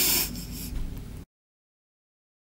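A short breathy snort from a woman, fading out; the sound cuts off to dead silence just over a second in.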